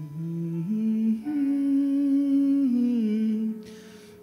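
A man's voice singing a slow melody into a microphone in long held notes that step up and down in pitch, with a slight waver on one note. It fades away near the end.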